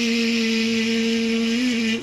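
A man's voice imitating a blender: one steady buzzing whirr at a single pitch, held for about two and a half seconds, for fruits and vegetables being blended into juice.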